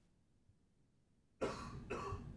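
Near silence, then about one and a half seconds in a person coughs close to a microphone, twice in quick succession.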